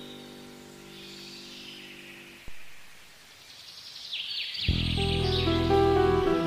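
A held piano chord fades away, a single click sounds about halfway through, and there is a short lull with birds chirping before the next piano piece starts loudly near the end.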